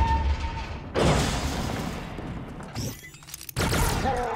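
Heavy blaster gunfire from a science-fiction soundtrack: loud blasts at the start, about a second in and near the end, each trailing off slowly.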